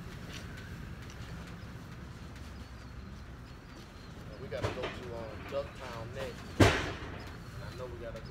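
A single loud metallic bang about two-thirds of the way in, from a loaded wire roll cage being moved off the truck's lift gate, with brief indistinct talk just before it and a steady low rumble underneath.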